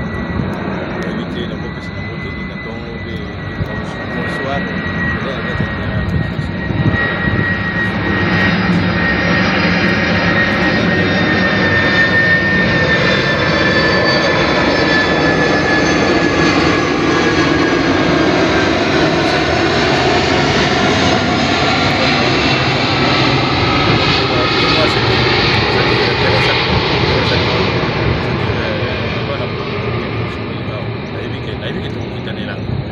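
An airplane passing overhead. Its engine noise builds over several seconds, stays loud for most of the stretch, then begins to fade near the end, with a high whine that slowly falls in pitch as it goes by.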